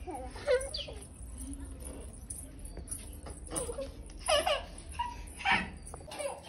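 Small children's short, high-pitched wordless calls and squeals, several times, the loudest two near the end.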